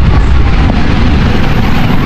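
Wind buffeting the microphone while riding a motorcycle, a loud steady rumble with the bike's engine running underneath.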